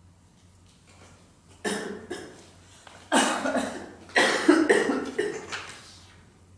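A man coughing: one cough burst a little under two seconds in, then a longer fit of coughs from about three seconds in.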